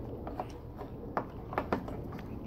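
A few small clicks and taps of a metal oil pressure sender and an aluminium block-off cap being handled and fitted together by hand.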